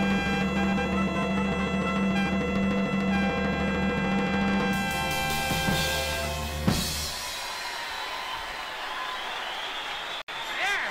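A jazz quintet of trumpet, alto saxophone, piano, bass and drums holding a sustained final chord over rolling drums and cymbals, closed by a sharp hit about seven seconds in. Live-audience applause follows and carries on to the end.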